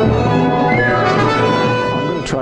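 Mixed chamber ensemble of brass, winds and strings playing contemporary concert music in sustained, slowly shifting held chords, with the brass prominent.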